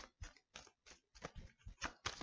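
Tarot cards being handled and drawn from a deck: a string of faint, light clicks and rustles of card stock, about ten in two seconds.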